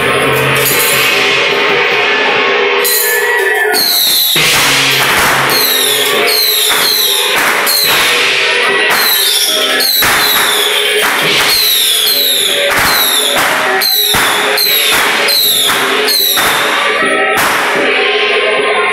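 Temple-procession band music: cymbals and gongs crashing in a steady beat about twice a second from about four seconds in, over a sustained melody line.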